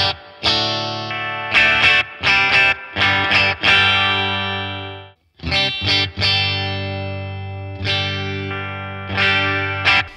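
Fender Player Plus Stratocaster played clean through a Boss Katana 50 amp, with the bridge and neck pickups combined: rhythmic strummed chords, some left to ring out. The sound is cut off suddenly about five seconds in, then the strumming resumes.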